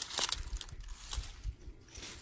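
Grapevine leaves and plastic bird netting rustling, with small irregular clicks, as grape berries are picked by hand from a cluster.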